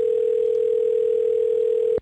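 Telephone dial tone: one steady, unbroken tone held for about two seconds over a faint hiss, cutting off suddenly at the end.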